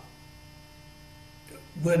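Steady electrical mains hum on the recording during a pause in speech; a man's voice starts again near the end.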